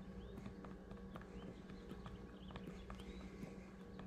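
Faint, irregular small clicks and taps of a stainless steel sculpting tool working epoxy sculpt around a deer mount's eye, over a steady low hum.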